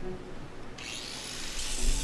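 Low room tone, then, almost a second in, an angle grinder grinding rust off a steel hydraulic tank: a steady, high-pitched grinding noise.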